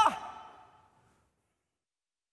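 The end of a man's spoken word, breathy and trailing off with room echo over the first second, then silence.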